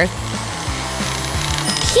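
Vilgrand electric blender running steadily, blending garlic cloves. Background music plays underneath.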